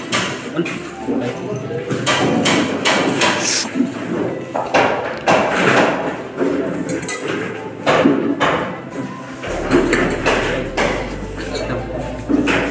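Indistinct chatter of several people in a hall, with frequent short knocks and clatter throughout.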